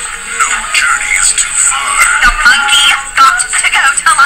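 Trailer music with singing playing from a television's speaker, heard across a small room.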